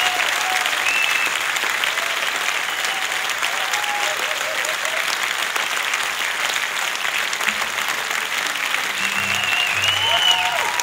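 Concert audience applauding and cheering at the end of a song, a steady wash of clapping with a few whistles or shouts on top, near the start and again near the end.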